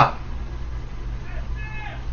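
A pause in a man's talk, filled by a low, steady background hum, with a faint, brief tone near the end.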